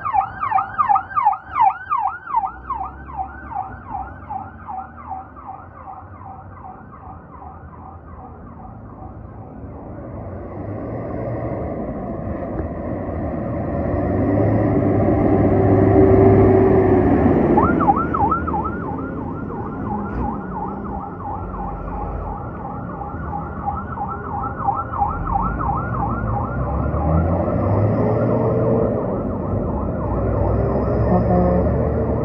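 Fire truck sirens on fast yelp, sweeping up and down about four times a second. The first siren fades away over the opening seconds. A heavy fire truck's engine then grows louder as it pulls out close by, peaking around the middle, and just after that a second siren starts yelping.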